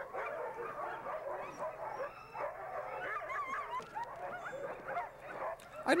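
A yard full of sled dogs barking and yelping over one another in a dense, continuous din: dogs worked up and eager to be taken along on a run.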